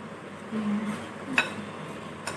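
Puffed rice being mixed by hand in a glass bowl: a faint dry rustle, with a short low tone a little way in and one sharp click, like a finger or ring against the glass, about a second and a half in.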